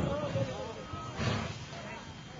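A man's voice trailing off, then a low murmur of indistinct voices over background hiss.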